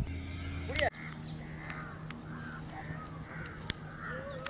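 Birds calling in short chirps over a steady low hum, with a couple of sharp clicks; the background changes abruptly about a second in.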